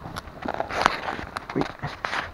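Twigs and branches rustling and crackling as someone pushes through dense brush on foot, with sharp snaps among the scraping, loudest a little under a second in. A short exclamation comes near the end.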